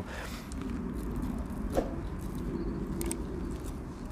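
Serrated table knife spreading soft cream cheese onto toast: a few faint scrapes and clicks over a steady low background rumble.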